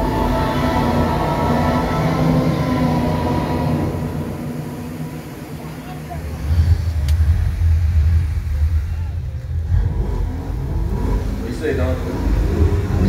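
Show soundtrack over outdoor loudspeakers: held musical tones for the first few seconds, easing off, then a deep rumble swells about six and a half seconds in and carries on.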